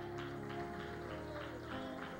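Soft instrumental church music playing held notes and chords, with a few light plucked or struck notes.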